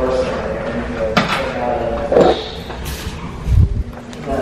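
People talking quietly, with a sharp click about a second in and a dull low thump near the end.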